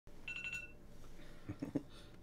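A brief, faint electronic beep: a high two-pitch tone pulsing quickly for about half a second, then a few faint low sounds shortly before the end.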